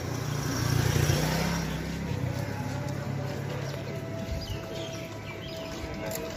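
Small motorcycle engine passing close by, loudest about a second in and fading over the next second, over a steady hubbub of street crowd voices. A faint steady high tone joins about four seconds in.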